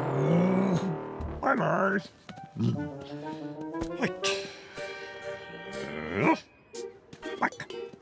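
Wordless cartoon vocal sounds, grunts and mumbles, over background music.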